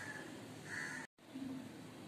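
Two short bird calls in the background, one right at the start and one just under a second in. The sound then cuts out completely for a moment just after the middle.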